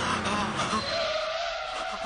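A moving city bus, with a long brake squeal coming in about halfway through as it slows.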